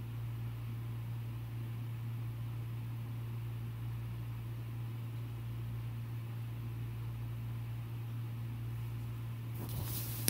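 Steady low electrical hum with a faint even hiss: room tone of the recording, with no surf or music in it. Near the end a brief rustle starts.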